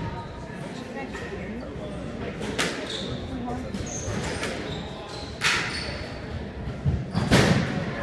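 Squash rally: the ball smacked by racquets and off the court walls in sharp, echoing hits a few seconds apart, the loudest near the end. Short high squeaks, typical of sneakers on the hardwood floor, come in the middle.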